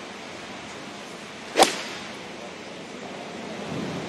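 A golf iron striking a teed ball: one sharp, crisp click about a second and a half in, reported as a good strike, over a steady outdoor hiss.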